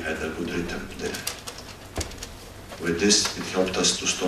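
Speech only: a man talking into a microphone in Serbo-Croatian.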